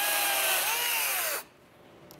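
Chainsaw running, its pitch rising and falling as it revs, then cutting off suddenly about a second and a half in.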